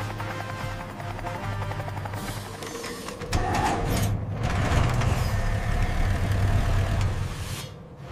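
Background music over a steady low vehicle drone, getting louder about three seconds in.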